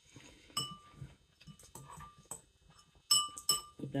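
Metal spoon clinking against a dish a few times, with short ringing tones. The two loudest clinks come close together near the end, over faint chewing.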